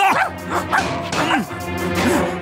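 A puppet dog barking and yipping a few times, over steady background music.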